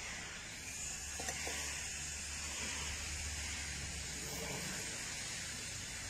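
A steady, even hiss with no rhythm that holds at a constant level.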